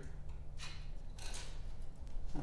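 A few faint light ticks and rustles of electrical wire being handled and fished behind a riding mower's battery, over a low steady hum.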